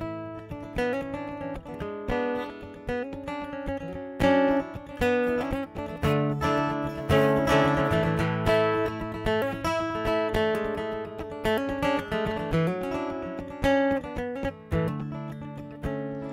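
Acoustic guitar played solo, chords strummed in a steady rhythm as the instrumental introduction to a song.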